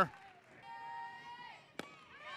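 Ballpark field sound: a high, held call lasting about a second, then a single sharp pop near the end.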